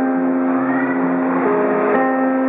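Steel-string acoustic guitar played, its chords ringing in sustained notes, with a change of chord about one and a half seconds in.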